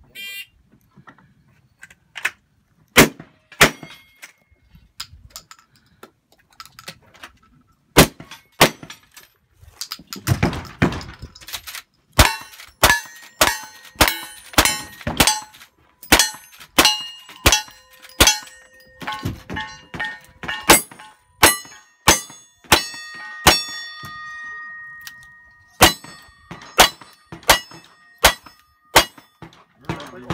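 A cowboy action shooting stage: a string of gunshots from a shotgun and a rifle, with the ringing of struck steel targets after many of them. The shots are spaced out at first, then come in fast runs of about two a second through the second half.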